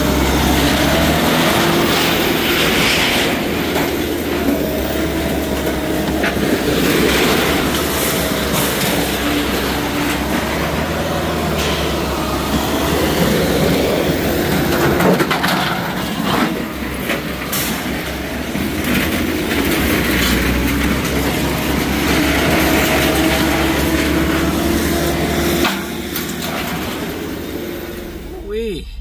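Heavy machinery running steadily at a scrap yard, its engine pitch wavering slightly, with scattered clanks and rattles of metal.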